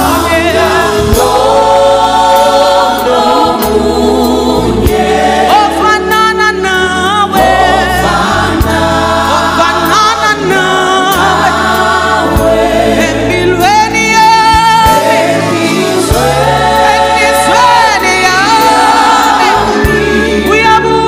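Live gospel praise music: a group of singers with band accompaniment over a steady bass line.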